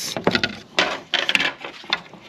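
Hard plastic bow cover plate being handled and set down on a sheet of HDPE plastic: a quick, irregular run of knocks, clatters and scrapes.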